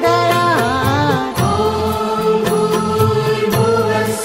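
A sung mantra with musical accompaniment. A voice bends through ornamented notes for the first second or so, then holds long steady notes over a low drone.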